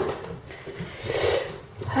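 A woman's breathy, wordless laughter, loudest about a second in.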